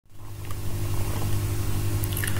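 Steady low electrical hum with hiss: the background noise of a voice recording, with no speech in it.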